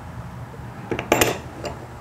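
Metal screw hold-down clamp clinking against the workbench as it is set into its hole: a few light clicks, then one sharper metallic clink about a second in.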